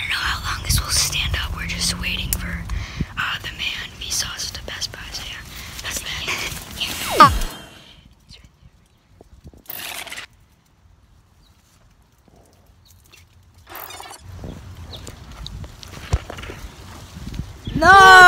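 Hushed whispering with rustling and handling noise for the first seven seconds, ended by a quick falling pitch sweep. Near silence follows, then faint rustling again near the end.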